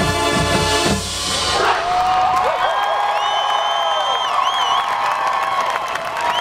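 Marching band with brass and drums holding a final chord that cuts off about a second in, then the audience cheering and whooping.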